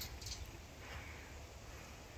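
Quiet outdoor background: a faint, steady low rumble of wind on the microphone, with no distinct handling sounds.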